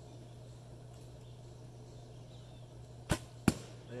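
A longbow shot: a sharp snap as the string is released, then about half a second later a louder crack as the arrow strikes the target and pops the balloon.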